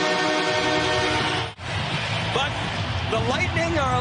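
Arena goal horn sounding a steady chord over crowd noise, the home team's goal signal, cut off abruptly about one and a half seconds in. After that, crowd noise with a commentator's voice.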